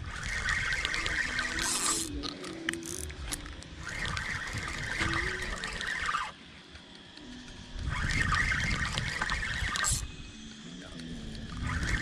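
Spinning reel being cranked in three bursts of about two seconds each with short pauses between, its gears whirring as line is wound in against a heavy fish.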